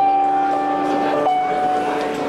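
Live rock band holding one sustained chord with no singing; the top note steps down slightly a little past halfway.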